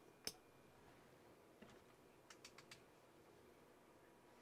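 Near silence: room tone, broken by one sharp click just after the start and a few faint clicks around the middle.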